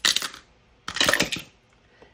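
A six-sided die rolled into a small wooden dice box, clattering and tumbling in two quick bursts about a second apart.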